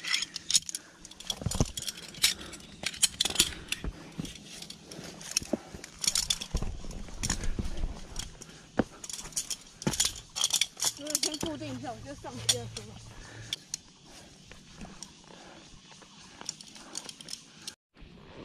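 Irregular clicks, scrapes and metallic clinks of a climber working up a steep sandstone face on a fixed rope: shoes scuffing the rock and clipped-in metal gear such as a carabiner clinking. A faint voice is heard briefly past the middle.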